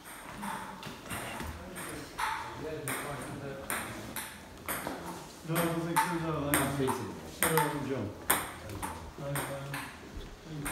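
Footsteps walking at a steady pace across hard floors, with indistinct voices talking in the background, loudest about halfway through.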